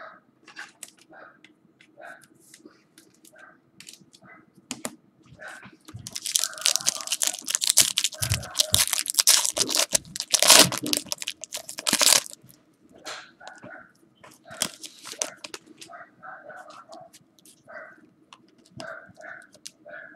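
A silver foil trading-card pack being torn open and its wrapper crinkled: a loud spell of crackling and tearing lasting about six seconds in the middle, loudest just past the halfway point.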